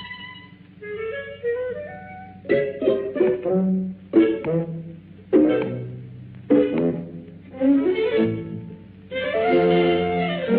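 Orchestral cartoon score, strings and woodwinds, with a run of sharp accented chords about once a second and a fuller sustained chord near the end.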